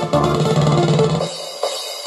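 Electronic dance music with a drum-kit beat played through the Edifier S70DB soundbar on its own, with the subwoofer switched off. About a second and a half in, the bass drops out of the track and the music thins.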